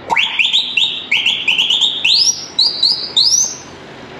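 Compressed-air Turkish whistle horn on a truck being tested: a rapid run of about a dozen short whistle notes, each sliding up in pitch, with the last few pitched higher, stopping shortly before the end.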